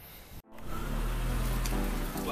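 A brief rustle of fabric against the camera microphone, then an abrupt cut to a steady low hum with a faint hiss.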